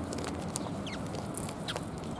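Eurasian tree sparrows chirping: scattered short high calls, a couple of them falling in pitch, over a steady low background rumble.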